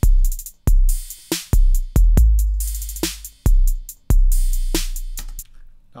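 Roland TR-808 drum machine beat from a step sequencer. Deep, tuned 808 kick notes of differing lengths, some cut short and some held long and dying away, play under a snare hit every two seconds and hi-hat ticks.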